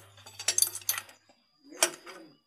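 A homemade steel-rod CVT holder tool clinking against a scooter's CVT clutch as it is hooked into the clutch holes. A cluster of metal clinks comes in the first second, then one sharp clink near the end.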